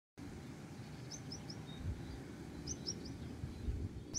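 Faint outdoor ambience with a low rumble, over which a small bird gives two quick runs of three short, high chirps, about a second in and again near three seconds.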